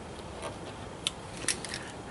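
A few sharp metal clicks from end-cutting nippers gripping and letting go of a molly bolt's screw head against its washer. The screw is being levered out a little at a time to draw the anchor's sleeve back tight behind the sheetrock.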